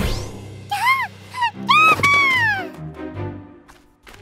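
A cartoon creature's high-pitched whimpering cries: four short rising-and-falling squeals, the last one longer and sliding down, over background music.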